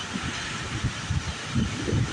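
Wind buffeting the phone's microphone: an irregular low rumble that comes and goes in gusts.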